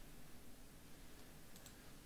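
A faint double click of a computer mouse about three-quarters of the way through, over quiet room tone.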